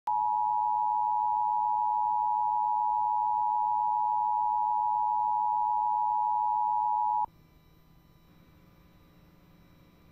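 Emergency Alert System attention signal: a loud, steady two-tone alert tone that cuts off suddenly about seven seconds in, followed by near silence before the alert voice message.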